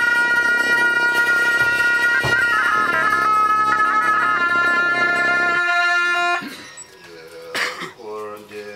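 Tibetan monastic shawms (gyaling) playing a held, ornamented melody over a low drone, stopping about six seconds in. A single sharp strike follows near the end.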